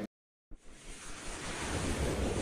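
An abrupt cut to silence, then a rushing noise swells in from about half a second in and keeps building: the opening whoosh of a TV channel's animated logo sting.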